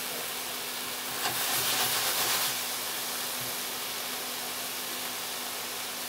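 Beef cubes and chopped onion sizzling in a hot stainless steel pan as they sear and brown, a steady frying hiss that swells briefly about a second in.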